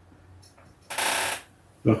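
A man's short breath, heard as a soft hiss of about half a second, in a pause between spoken phrases.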